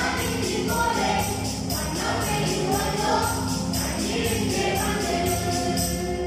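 Mixed choir of women's, girls' and men's voices singing a Malayalam Christmas carol, over a steady, evenly spaced high percussion beat. The song stops at the very end.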